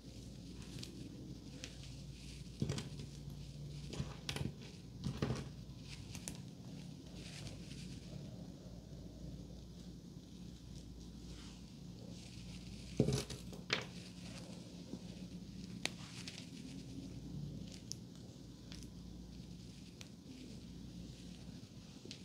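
Close-up hands handling hair during styling: soft rustling of hair with a few scattered light clicks and taps, the loudest cluster about thirteen seconds in, over a steady low room hum.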